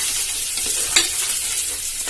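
Spiced tomato masala sizzling steadily as it fries in an aluminium pressure cooker, with a spoon stirring and scraping through it. There is one sharp click about a second in.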